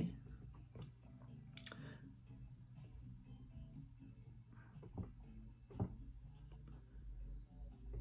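Quiet room with a steady low hum and a few faint, short clicks and taps, one about a second and a half in and a couple more around the middle.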